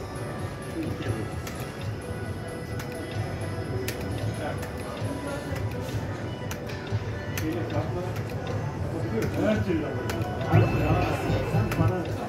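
Electronic music and chimes from a Bell Link slot machine as its reels spin, over a murmur of casino voices. The sound grows louder in the last couple of seconds as a small win is paid.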